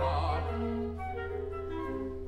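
Opera orchestra playing held notes, as a male singer's note with a wide vibrato ends just after the start.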